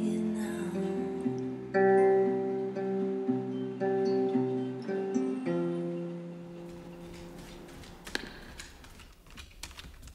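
Acoustic guitar playing a few slow plucked chords, the last one ringing out and fading away. Faint scattered clicks follow near the end.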